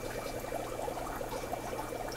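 Aquarium water trickling and bubbling steadily, over a low steady hum.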